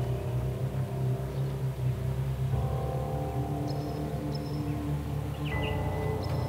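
Suspenseful film score: sustained low chords over a pulsing bass, moving to a new chord about halfway through and again near the end.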